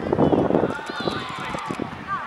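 Voices of players calling out on the pitch during a five-a-side football game, with running footsteps on artificial turf and a louder burst of noise in the first half-second.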